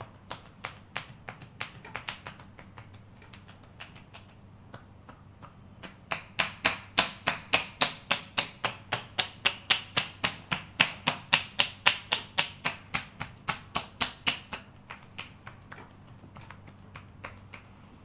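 Massage percussion: a therapist's hands striking bare shoulders and back with crisp slapping claps. The strokes are sparse and soft at first, then fall into a loud, even run of about four a second from about six seconds in, and ease off near the end.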